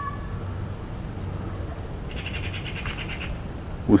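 A bird's rapid trill of quickly repeated high notes, about a second long, starting about two seconds in, over a steady low background hum.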